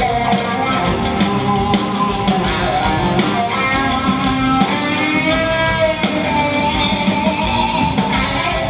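Live rock band playing: guitar strumming over a drum kit, with a higher held melody line above.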